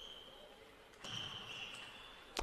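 Faint table tennis rally sounds: a knock about a second in, and high, drawn-out squeaks of shoes sliding on the court floor.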